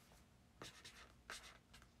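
Near silence: room tone with a few faint, short scratchy sounds, handling noise near the microphone.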